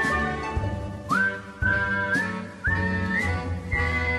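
A whistled melody over the song's instrumental accompaniment, a clear high tone that slides up into each new note, three notes in turn.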